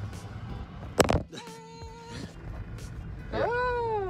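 A sharp knock about a second in as the camera is set down on the car's dashboard. It is followed by a short steady tone and, near the end, a pitched sound that rises and then falls.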